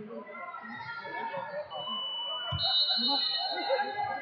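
Electronic timer buzzer sounding over gym chatter: a thin steady high tone starts a little before halfway, and a harsher, fuller buzz joins it and holds to the end, marking the end of the wrestling bout.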